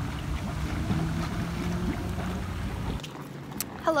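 Hot tub jets churning the water, a steady rushing and bubbling that cuts off abruptly about three seconds in.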